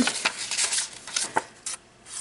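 Paper handling on a handmade junk journal: its pages and a ribbon-tied tag in a page pocket rustle and flick as they are turned and pulled. A string of short, sharp rustles that thins out and grows quieter near the end.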